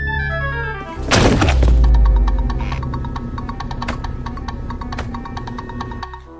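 Cartoon falling-whistle sound effect: a descending whistle and a run of falling notes end in a heavy crash about a second in, the sign of something dropping and landing. A low rumble follows, and then music with an even ticking beat.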